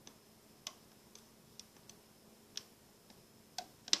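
Small, sharp, irregular clicks of a plastic loom hook and rubber bands on the pins of a Rainbow Loom as bands are hooked and looped forward, about eight in all, the sharpest near the end.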